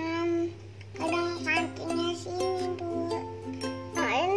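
Background music: a light children's tune of held notes stepping in pitch, over a steady low hum. A short voice-like note sounds right at the start.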